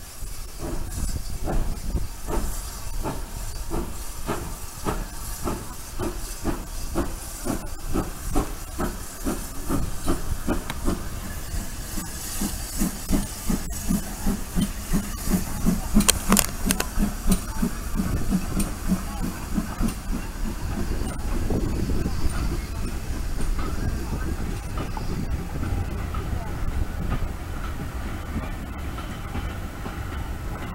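Pannier tank steam locomotive L150 working a train past at close range, its exhaust beats quickening as it gathers speed, loudest as it passes about halfway through. Vintage Metropolitan Railway carriages then roll by with a steady rumble.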